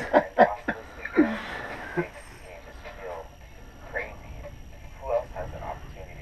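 Brief, low, broken bits of men's speech with pauses between them, and a short click about two seconds in.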